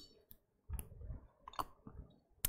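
Faint scattered clicks and soft rustling in a quiet room, from a person moving close to a headset microphone.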